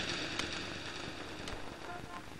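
A quiet soundtrack hiss that fades away after a loud passage, with a couple of faint clicks.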